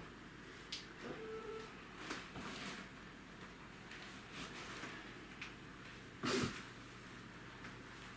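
Light clicks and small knocks of parts being handled and fitted by hand onto a CNC plasma cutter's torch carriage, with one louder knock a little over six seconds in.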